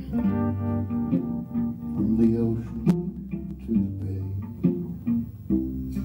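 Live band playing an instrumental passage between sung lines: electric guitar picking steady repeated notes over cello and a low bass line.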